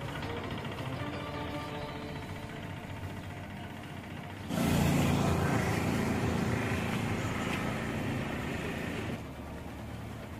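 Background music for about the first four and a half seconds. Then a sudden, louder stretch of a motor vehicle's engine running with road noise, which cuts off abruptly about a second before the end.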